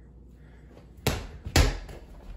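A small basketball bouncing twice on a hard floor, about half a second apart, each a sharp knock with a short ring-out.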